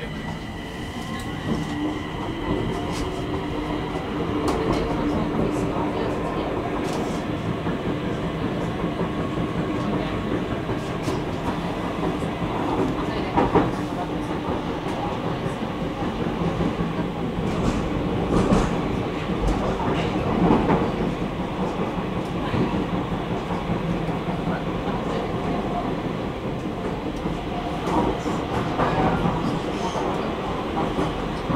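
Stockholm metro train heard from inside the car as it pulls out of a station and runs through the tunnel. A steady rumble of wheels and motors runs throughout, with a few louder clacks of the wheels over the track.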